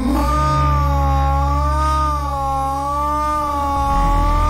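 Breakcore electronic music: a held, slowly wavering high tone, somewhat like a drawn-out wail, over a steady deep bass that shifts near the end.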